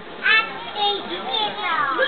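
Children's high-pitched voices calling out among a crowd, with a sharp call just after the start and a long falling call near the end.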